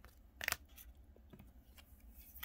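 Rigid plastic card holders being handled on a tabletop: one short, sharp plastic click and rustle about half a second in, then a few faint taps.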